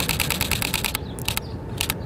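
Canon EOS M6 mirrorless camera's shutter firing in continuous burst mode, shooting RAW plus JPEG: a fast, even run of clicks, about ten a second. About a second in the run breaks off, and a few slower clicks follow near the end.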